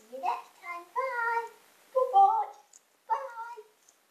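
A child's high-pitched voice in several short sing-song phrases without clear words, the loudest about two seconds in.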